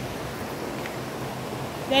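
A stream's flowing water making a steady rushing noise.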